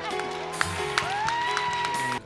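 Live worship band music, with crowd noise from about half a second in and a long note that rises and then holds steady to the end.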